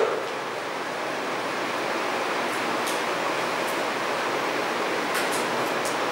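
Steady, even hiss of classroom room noise, with a few faint ticks.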